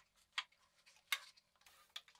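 Light clicks of the toy truck's metal body parts knocking together as they are handled and fitted: three short, sharp ticks spread evenly across two seconds.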